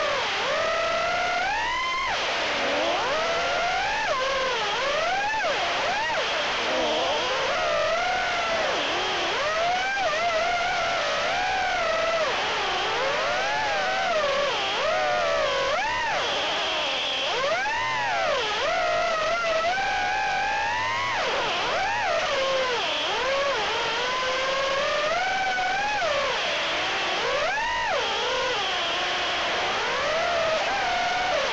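Brushless motors and propellers of a BetaFPV HX115 3-inch quadcopter whining in flight, heard from the quad's onboard camera. The pitch sweeps up and down continually as the throttle changes.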